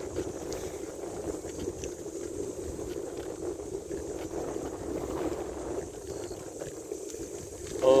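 Steady wind rushing over a handlebar-mounted microphone while riding a bicycle, with tyre and road rumble underneath.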